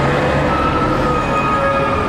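Loud, steady rumble of a passing heavy vehicle or train, with a thin, steady whine above it.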